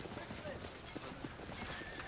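Irregular clopping of horse hooves on stone paving, with a faint wavering whinny near the end.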